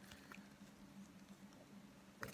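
Near silence: a faint steady room hum with a few soft ticks from handling a squishy toy and its plastic wrapper.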